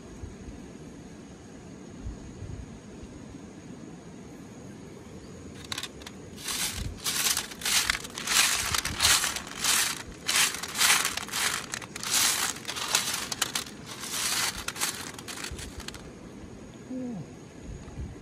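Wet river pebbles rattling and scraping against a perforated metal sieve as a hand rakes through them, in irregular bursts starting about six seconds in and stopping about sixteen seconds in, over a steady low background rush.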